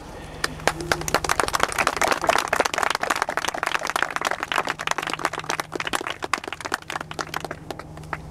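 A small group applauding, the clapping swelling over the first couple of seconds and thinning out near the end.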